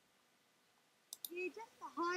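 Near silence, then two quick computer-mouse clicks a little over a second in, followed by a faint voice starting to speak.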